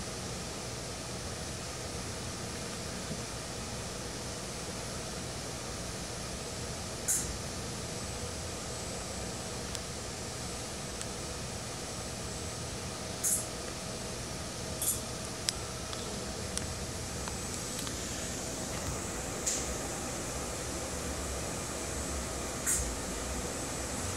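Fanuc industrial robot arm moving through its fuse-handling routine: a steady mechanical hum with a faint steady tone. Several brief, high, sharp hisses or clicks are spread through it.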